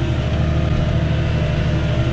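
Diesel engine of a McCormick tractor running steadily under load while ploughing, heard from inside the cab as an even low drone.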